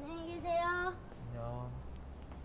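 A young boy's high, drawn-out sing-song call lasting about a second, followed by a brief low utterance from a man.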